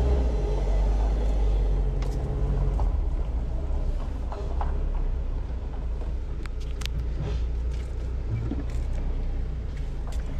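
1988 Mitsubishi Pajero's intercooled turbo-diesel engine running with a steady low rumble as the vehicle moves off slowly.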